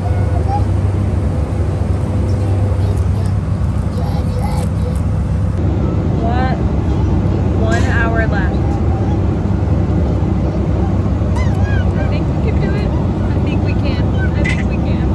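Steady, loud low rumble of an airliner's jet engines and airflow, heard inside the passenger cabin.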